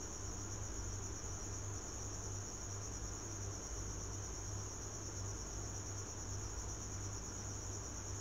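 Steady high-pitched background whine with a low hum underneath, unchanging throughout; no other sound.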